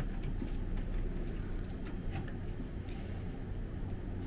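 Steady low room hum with a few faint, short clicks and rustles of small objects being handled at a desk.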